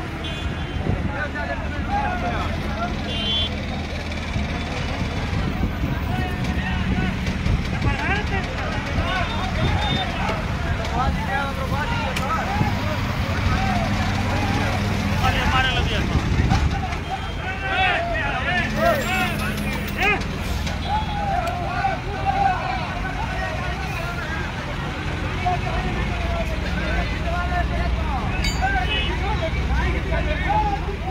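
Several men talking at once, a continuous crowd chatter, over the steady low hum of a heavy diesel engine running.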